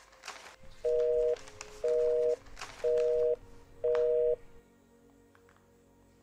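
Telephone busy signal heard through a mobile phone: four short beeps of two tones sounding together, about one a second. The call is not getting through.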